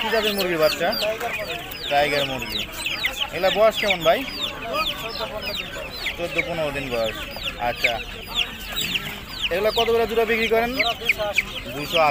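A caged group of young chicken chicks peeping continuously, with many short, high, downward-sliding calls overlapping.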